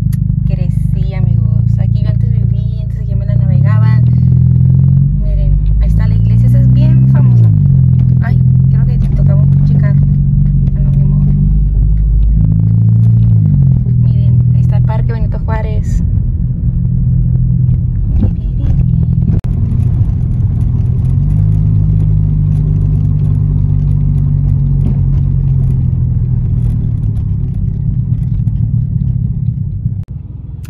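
Car engine and road noise heard from inside the cabin while driving. The low engine note rises and falls in slow sweeps as the car speeds up and slows down.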